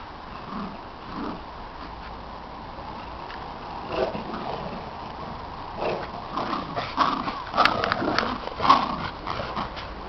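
Two dogs playing tug of war with a rope toy, one giving a short bark at about four seconds and then a quick run of short barks and play noises from about six seconds in, loudest towards the end.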